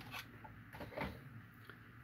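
Faint handling sounds of a diecast model being set onto a display stand, with a couple of soft knocks.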